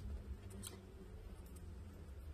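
Faint handling sounds of a smartphone on a table: a few light taps and rubs as it is touched and picked up, over a low steady rumble.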